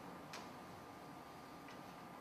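Quiet room tone with a faint steady high hum and two faint clicks, one about a third of a second in and a weaker one near the end.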